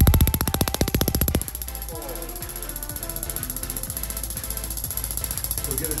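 Radial shockwave therapy handpiece firing at 10 Hz, a rapid even train of sharp taps about ten a second. It is loud for about the first second and a half, then carries on more quietly.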